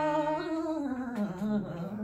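A male ghazal singer holds a wordless sung note that slides down in pitch and wavers, over a sustained harmonium accompaniment.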